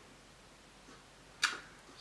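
Quiet room tone, broken once about one and a half seconds in by a short, soft intake of breath.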